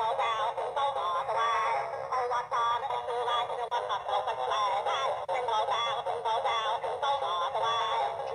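Animated singing Santa toy playing a song with music through its small built-in speaker. The voice sounds thin, with no bass.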